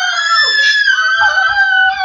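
A child's long, high-pitched excited scream held in one breath for about two seconds, its pitch sagging slightly towards the end.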